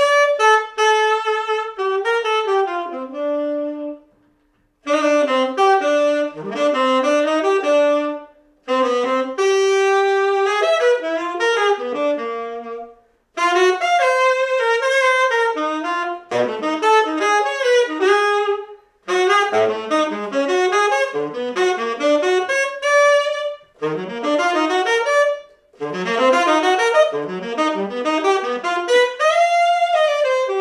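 Unaccompanied tenor saxophone playing fast, flowing jazz improvisation, a single line of notes in long phrases broken by short pauses for breath.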